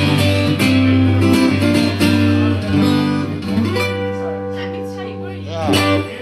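Acoustic guitar strumming the closing chords of a song. About four seconds in, a chord is left ringing, and a last louder strum comes near the end.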